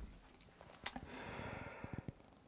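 A short click a little under a second in, then a man's soft breath drawn in for about a second.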